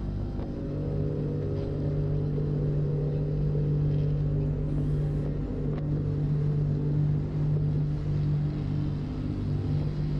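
BMW R1200RT boxer-twin motorcycle riding at a steady speed, its engine holding a steady low note under road and wind noise.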